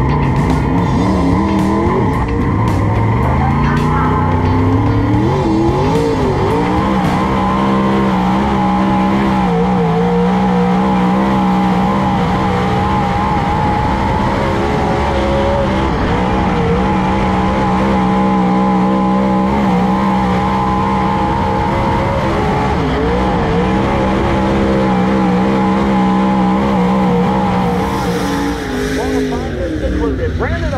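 Dirt late model race car's V8 engine heard from inside the cockpit during a qualifying run, revs climbing over the first few seconds, then rising and falling repeatedly through the laps. The engine eases off near the end.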